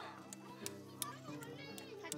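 Sharp clicks of a hammerstone striking a stone held on a leather pad, about five in two seconds, as the stone is knapped into a tool. Voices chatter throughout.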